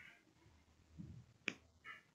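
Near silence, broken by one short, sharp click about one and a half seconds in.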